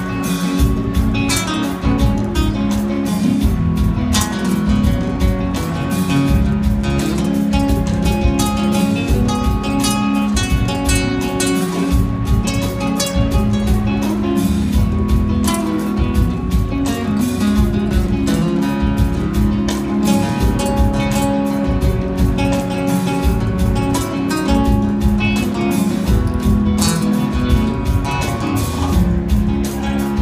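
Live band playing an instrumental stretch with plucked guitar to the fore over congas, drum kit and sustained organ, heard from the audience through a phone's microphone.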